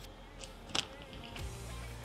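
Quiet background music, with two faint short clicks a little under a second in.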